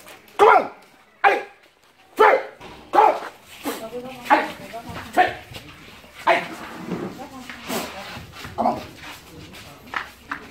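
A series of short, sharp bark-like cries, about a dozen, roughly one a second, each loud and abrupt.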